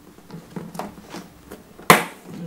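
Tool board in the lid of a hard tool case being handled back into place: faint rustling and small taps, then one sharp click near the end as it is fastened.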